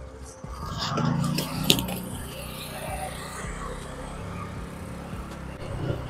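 Low, steady rumble and road noise of a motorbike ride, heard from the rider's seat, with a single sharp click about a second and a half in.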